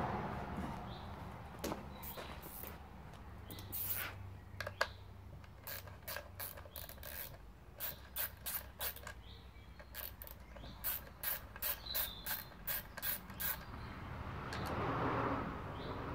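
Screws being undone on the side cover of a vintage Homelite VI-955 chainsaw: a string of short sharp clicks, irregular at first, then a steadier run of about three a second.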